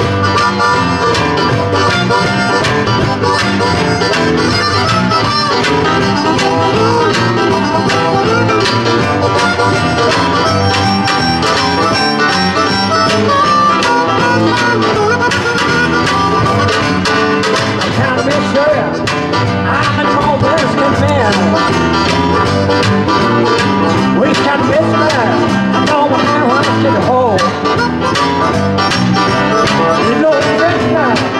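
Live blues band playing an instrumental passage with no singing: harmonica leading over acoustic guitar, electric bass guitar and organ.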